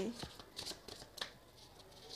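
Tarot cards being handled by hand as a spread of cards is gathered back into the deck: faint, scattered papery rustles and light taps of card on card.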